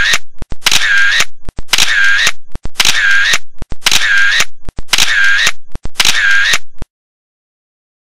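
Camera shutter sound effect repeated seven times at about one a second. Each repeat is an identical clicking burst about half a second long, and the series stops about seven seconds in.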